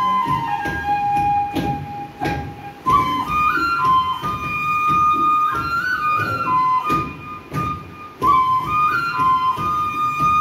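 Sipung, the long Bodo bamboo flute, playing a folk melody solo: a long held note, then a phrase of stepping notes, a short break between about seven and eight seconds in, and the melody picks up again.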